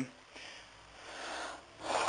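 Soft breathing noise from a man close to the microphone: a short breath, then a longer one about a second in.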